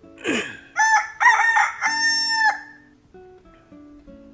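A rooster crowing once: a few short notes run into a longer held note that cuts off sharply, after a brief falling swoop, over soft plucked-string music.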